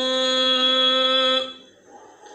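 A male Quran reciter chanting Quranic Arabic word by word, holding one long, steady vowel that stops about one and a half seconds in.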